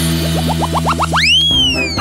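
Short cartoon-style logo jingle: a held chord under a quickening run of short rising boings, ending in one long whistle-like swoop that rises and then falls.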